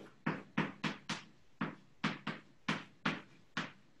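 Chalk writing on a blackboard: about a dozen short, sharp taps, irregularly spaced, as the symbols of an equation are chalked up stroke by stroke.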